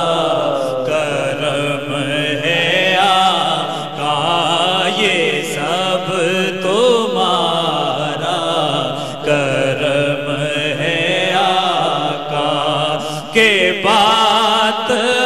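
Unaccompanied naat sung by men: a solo male voice carrying a long, winding melodic line over a steady held tone from other voices.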